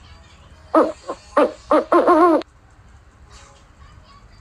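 A bird's hooting calls: five short hoots in quick succession, the last two longer and wavering in pitch, cut off abruptly about two and a half seconds in.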